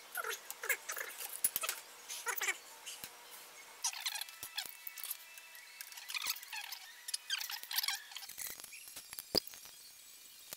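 Irregular light metal clinks and scrapes, with rustling, from hand tools being handled against the cast iron lathe headstock. A few of the clinks leave a faint ring.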